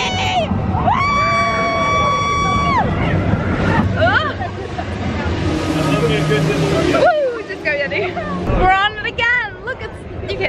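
Riders screaming on the Expedition Everest roller coaster: one long, steady scream about a second in, then wavering shrieks and whoops, with a rush of air in the middle, over the steady rumble of the coaster train.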